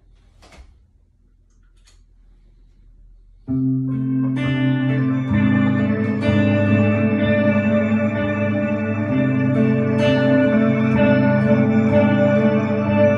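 Electric guitar through effects pedals, entering suddenly about three and a half seconds in with sustained, reverberant chords that keep ringing and layering into a dense ambient drone. Before it, only faint room noise with a click or two.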